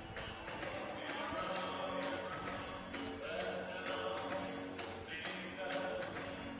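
Music played over the arena's public-address system during a stoppage in play, echoing in the rink, with scattered sharp clicks over it.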